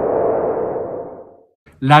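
Section-title transition sound effect: a ringing tone over a soft wash of noise that fades away about a second and a half in. A man's voice starts speaking near the end.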